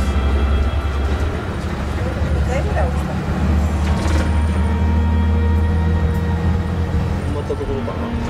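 Tour coach running along the road, heard from inside the cabin as a steady deep engine and road rumble, with passengers' voices over it.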